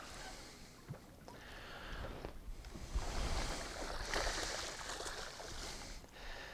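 Hooked bass splashing and thrashing at the surface beside a boat as it is reeled in, over wind and lapping water. The splashing is loudest from about three seconds in.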